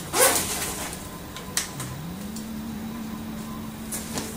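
Rustling and handling of a nylon camera backpack as its front pocket is opened and searched, with one sharp click about a second and a half in. A faint low steady hum comes in near the middle.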